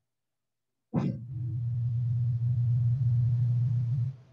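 A single sharp thump about a second in, followed by a steady low hum with a faint hiss.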